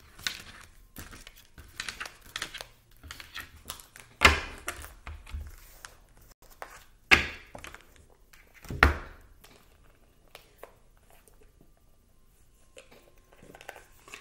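Tarot cards being swept up off a wooden tabletop and gathered into a deck: paper cards sliding and flicking, with three sharp knocks on the table about four, seven and nine seconds in. It goes quieter for the last few seconds.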